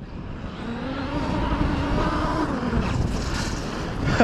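Traxxas X-Maxx 8S RC monster truck on paddle tires running on sand: its electric motor whines, the pitch rising and then falling away as it drives in, over a noisy rush of tyres and sand.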